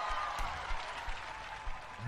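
A wash of applause-like noise that fades steadily away.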